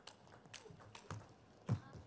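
Table tennis rally: sharp clicks of the celluloid-type ball on rackets and table, about one every half second, with a heavier thump near the end as the point finishes.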